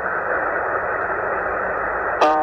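Tecsun PL-990x shortwave receiver in lower sideband on the 40-meter amateur band giving out steady band-noise hiss, squeezed into the narrow voice passband of the SSB filter, with no voice on the frequency.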